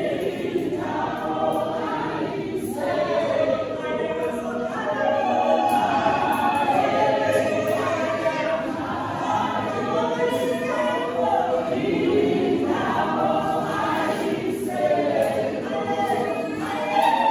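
A women's choir singing a gospel song in isiNdebele, several voices together in one continuous sung line.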